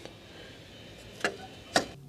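Two short sharp clicks about half a second apart, in the second half, as a boat's navigation light is clipped back onto its mount on the pulpit rail.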